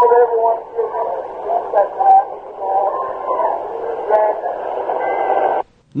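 A voice heard through a thin, narrow band with hiss, like an old tape or radio recording, ending abruptly near the end.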